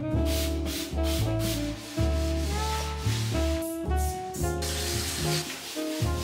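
Jazzy background music with a held bass line, over repeated bursts of rubbing, scrubbing noise from household cleaning.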